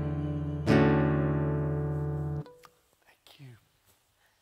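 Acoustic guitar: a final strummed chord about a second in rings out, then is damped abruptly about two and a half seconds in, closing the song.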